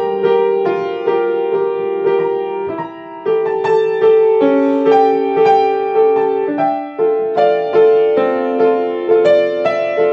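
Solo acoustic piano playing a slow melody over held chords, the notes ringing on and overlapping, with a new note about every half second.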